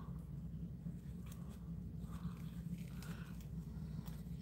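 Faint snips and clicks of small scissors cutting into the leathery shell of a snake egg, over a low steady hum.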